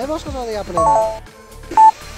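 Mobile phone keypad tones: a quick cluster of dialing beeps about a second in, then one loud single beep near the end, over background music with a steady beat.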